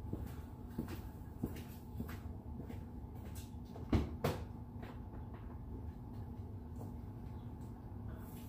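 Clicks and knocks from a pickup truck's door and cab, with one loud double thump about four seconds in, over a low steady rumble.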